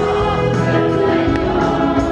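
A male singer's voice, amplified through a microphone, with accordion accompaniment, in sustained musical notes.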